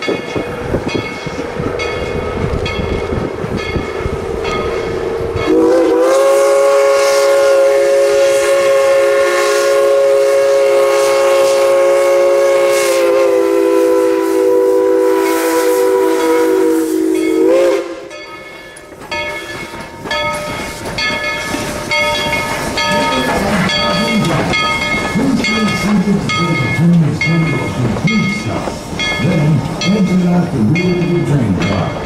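Narrow-gauge steam locomotive No. 190 sounding its Lunkenheimer chime steam whistle in one long blast of about twelve seconds, a chord of several tones that sags slightly in pitch partway through. Before and after the blast there are evenly spaced exhaust chuffs as the train gets moving, and the coaches roll past with wheel clicks.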